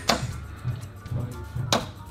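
Two darts striking a Winmau Blade 6 bristle dartboard, one right at the start and one near the end, each a short sharp thud. Background music with a steady low beat runs underneath.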